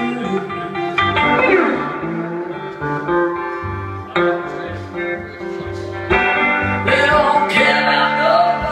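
Live blues band playing, led by an electric guitar over a bass line, with notes sliding in pitch about a second in and again near the end.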